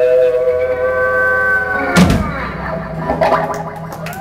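Electric guitars holding a sustained chord that sags slightly in pitch, cut by a single loud crash of drums and cymbals about halfway through as the live rock song ends, followed by the ringing decay of the amplified instruments.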